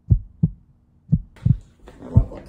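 Heartbeat sound effect: two low double thumps (lub-dub), about one pair a second, laid in for suspense.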